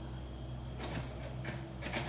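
A steady low machine hum, like an engine running, with a few faint clicks and rustles.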